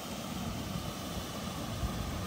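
Steady outdoor rushing noise with an uneven low rumble underneath.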